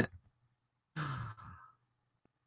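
A man's sigh about a second in: one short, breathy exhale lasting about half a second.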